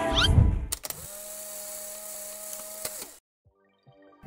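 Edited-in sound effects: a short rising whoosh at the tail of the intro music, then a click about a second in and a steady mechanical whir with a hum for about two seconds, ending with another click.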